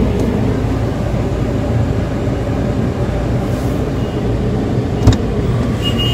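Car engine running with a steady low rumble, heard from inside the cabin, with one sharp click about five seconds in.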